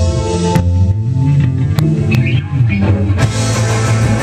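Live rock band playing electric guitars, bass, keyboard and drums. The sound thins out for a couple of seconds, with a few sharp hits, then the full band comes back in near the end.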